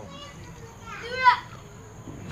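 A person's brief wordless vocal sound about a second in, over low background noise.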